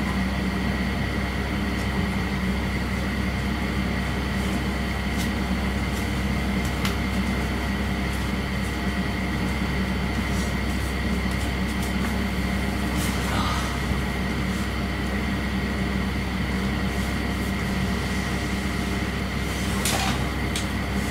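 Steady electrical hum and hiss of a quiet room, with a few faint clicks and a brief rustle about halfway through as someone moves about.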